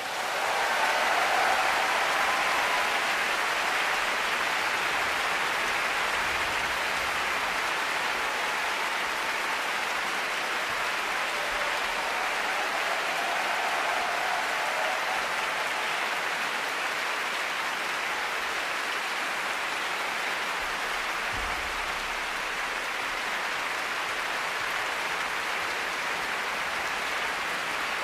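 Large concert-hall audience applauding, swelling up in the first second and then holding steady as a sustained ovation.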